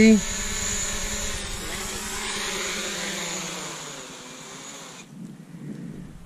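A DJI Mavic quadcopter's propellers whirring as it hovers low and comes down to land, the sound slowly fading and then cutting off about five seconds in.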